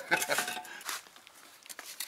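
Soft, irregular scraping and rubbing of a small metal tool along brick and a fresh mortar joint, cleaning and smoothing the mortar.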